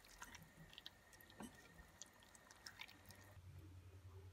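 Near silence, with faint soft wet clicks of a wooden spoon stirring cabbage and mince in a steel pot.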